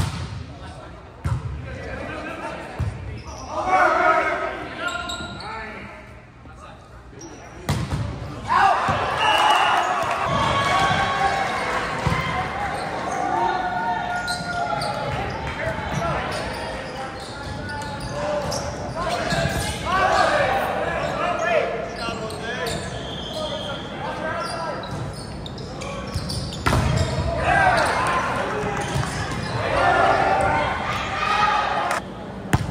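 Volleyball play in a gymnasium: the ball is struck on serves, passes and hits with sharp slaps, among players and spectators calling out and shouting, all echoing in the hall.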